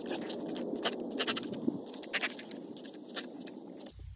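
Trigger spray bottle squirting a soap-and-water solution onto rose leaves in a quick series of short spritzes, with leaves and stems rustling as a hand moves through the foliage.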